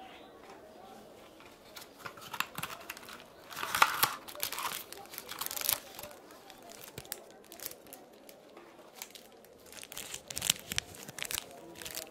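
Gloved hands handling paper-wrapped adhesive bandages and their packaging: irregular crinkles and rustles, with a louder burst about four seconds in and more near the end.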